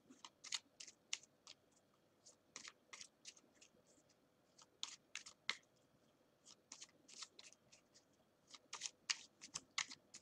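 Faint, irregular light clicks and taps, about two to three a second with short gaps.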